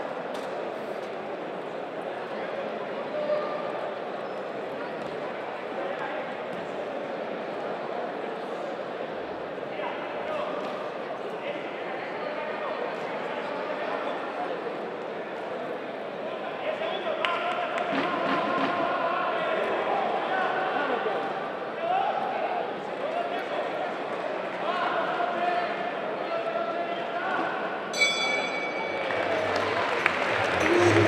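Boxing crowd shouting and cheering, with many voices overlapping, growing louder through the second half. Near the end a bell rings once, marking the end of the round.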